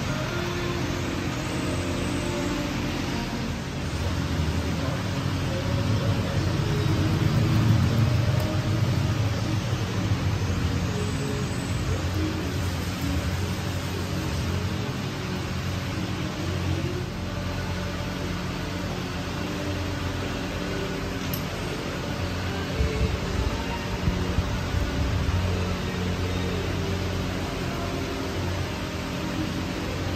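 Background music with sustained low tones, over faint workshop background noise.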